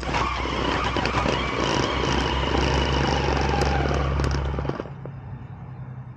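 RC rock crawler's electric motor and geared drivetrain running hard under load as the truck climbs, with tyres scrabbling and grinding on rock. The noise stops abruptly about five seconds in.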